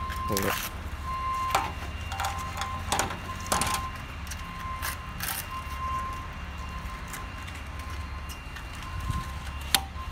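Rubber screen spline being pulled out of a pool enclosure frame channel with pliers: a few short rasps and sharp snaps at irregular intervals, the loudest snap near the end.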